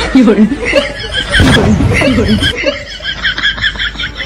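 Laughter: several short bursts of chuckling and snickering, right after a comic punchline.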